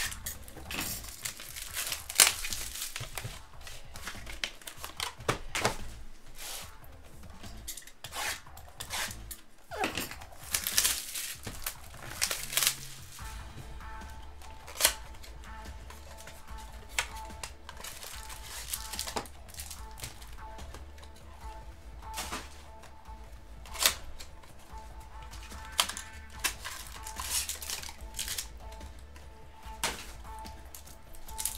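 Foil trading-card pack wrapper crinkling and tearing as it is opened, the crackling densest in the first dozen seconds, then only scattered sharp crackles over quiet background music.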